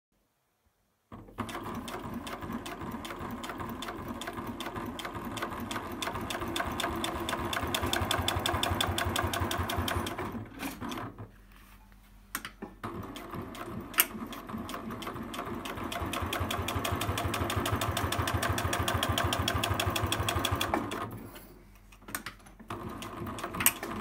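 Industrial triple-feed (walking-foot) sewing machine, model 8672DN, stitching through leather with a fast, even rhythm of needle strokes. It runs in two long bursts that gain a little speed as they go, with a stop of about two seconds near the middle and a few short stop-start runs near the end.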